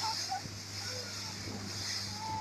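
Motorboat engine running steadily at speed, a constant low drone, under a rush of wind and water noise from the boat's passage.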